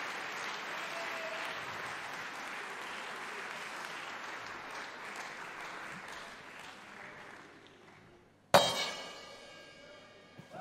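Concert audience applauding, fading away over about eight seconds. About eight and a half seconds in comes a single sharp, loud strike that rings on and dies away.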